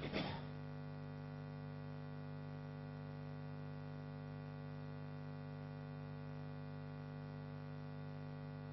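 Steady electrical mains hum with a stack of evenly spaced tones and nothing else over it, after a short burst of noise right at the start.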